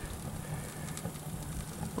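Small wood fire burning in the open firebox of a steel camp stove: a low steady rushing noise with a few faint crackles.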